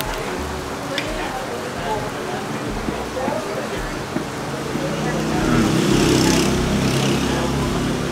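A motor vehicle passing on a nearby road: a low rumble that swells from about five seconds in, peaks near six and fades, over a steady background murmur of voices.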